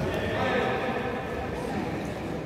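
Futsal being played in a large sports hall: indistinct voices of players and spectators calling out, over the footfalls and ball touches of play on the court.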